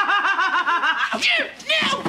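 A person laughing in a rapid, high-pitched cackle of about eight pulses a second, breaking off about a second in, followed by shouted words.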